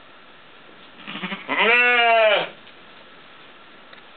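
A sheep gives one loud bleat about a second long, its pitch rising and then dropping away, with a few short, lower sounds just before it.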